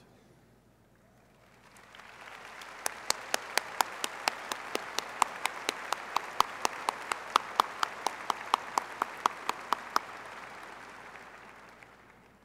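Large crowd applauding, swelling in about two seconds in and fading out near the end. Over it, one pair of hands claps loudly and evenly close to the microphone, about five claps a second.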